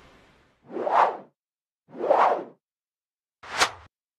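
Three whoosh sound effects about a second apart, each swelling up and fading away in well under a second; the third is shorter and sharper than the first two.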